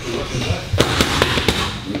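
Boxing gloves smacking into focus mitts in quick punch combinations: about five sharp smacks in two seconds, with voices in the background.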